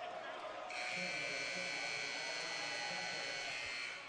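Arena scoreboard horn sounding one steady, held blast for about three seconds, starting under a second in, over crowd murmur: the signal for a timeout.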